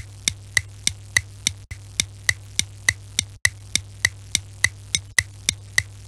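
Looped ticking sound effect: sharp, evenly spaced ticks at about three and a half a second over a low steady hum, with a tiny break roughly every second and a half where the loop restarts.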